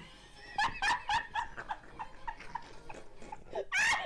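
Two women laughing hard: a run of short, breathy laughs several times a second, rising to a louder burst of laughter near the end.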